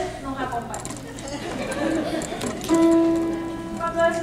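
A crowd of voices singing a calypso, dropping to a mix of softer voices in the middle, then holding one long note about three seconds in.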